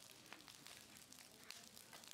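Near silence, with faint scattered clicks.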